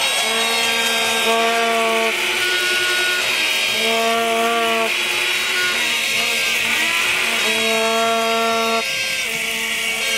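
Crowd sounding buzzy plastic horns in long held notes that start and stop at different pitches, over a steady din of whistling and crowd noise.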